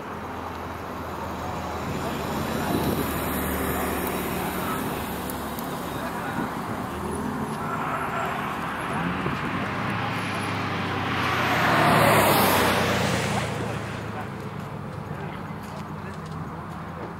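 A car being driven on the track: its engine note rises and falls, and it grows loudest as the car passes about twelve seconds in, then fades away.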